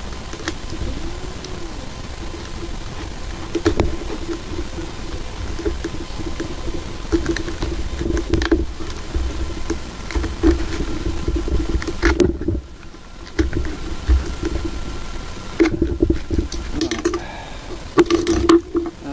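A craft knife cutting around the seam of a cardboard tube: a continuous rough scraping and rubbing, with a few sharp knocks and a quieter stretch a little past the middle.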